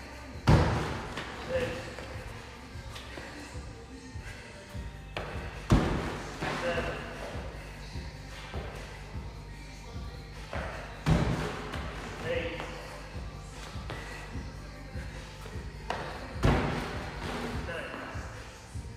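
Burpee box jump overs at a wooden plyo box: four heavy thuds about five seconds apart, each followed by a few lighter knocks, as the body drops to the gym floor and the feet land from jumping the box. Background music plays throughout.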